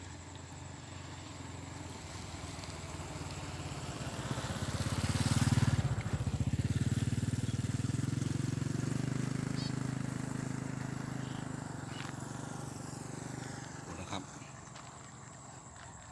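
A motorcycle passing by. Its engine grows louder over the first five seconds, peaks with a drop in pitch about five to six seconds in, then fades away over the next eight seconds.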